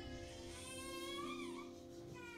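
Upright piano holding slow, sustained chords. Over it, for the first second and a half or so, a high, wavering voice rises and falls.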